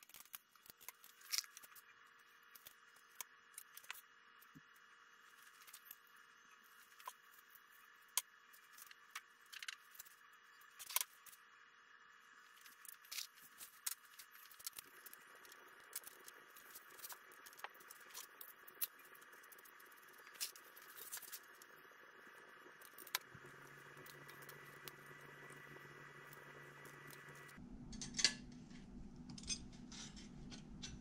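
Scattered small metallic clicks and clinks of clecos and aluminium rudder parts being handled, over a faint steady hum that grows louder in steps through the second half.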